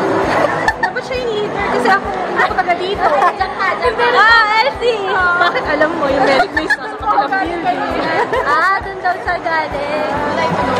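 Several people chattering at once in a crowded mall concourse, over background music with a steady bass beat.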